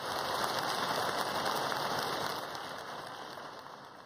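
Audience applauding, rising sharply at the start and dying away toward the end.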